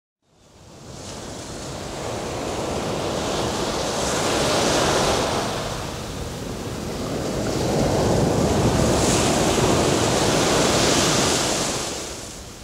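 Sea surf: a rushing wash of waves that fades in, swells, ebbs slightly about halfway, then swells again before easing off near the end.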